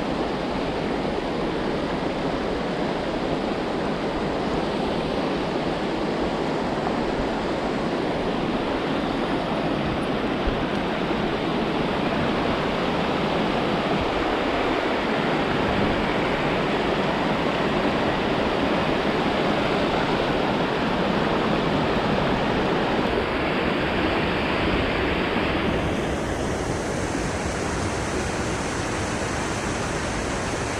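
Steady rushing of a rocky mountain stream's rapids and small cascades. About 26 seconds in, the hiss turns duller.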